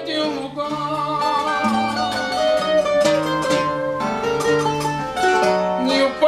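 Portuguese guitar (guitarra portuguesa) picking a fado melody over a fado viola (classical guitar) playing the bass line and chords: the instrumental accompaniment of a fado.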